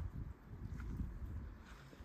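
Quiet pause in speech: a faint, steady low rumble of outdoor background noise, with no distinct sound event.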